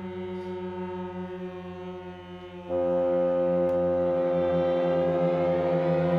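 A chamber orchestra of strings and winds holds long, sustained chords with a droning quality. About two and a half seconds in, a louder chord enters suddenly and is held.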